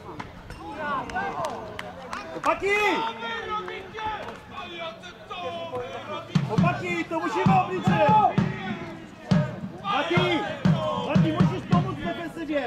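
Players calling and shouting to each other across a football pitch, the voices rising and falling in short bursts and loudest in the second half, with occasional sharp thuds of the ball being kicked.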